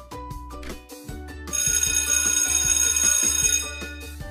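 Light background music with plucked notes, then about a second and a half in a bell-alarm sound effect rings for about two seconds as a countdown timer runs out.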